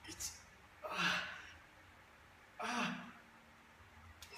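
A man's heavy breathing under strain while pressing dumbbells overhead: a short sharp breath at the start, then two forceful voiced exhalations, about a second and about three seconds in, one per rep. This is the effort of working near muscle failure.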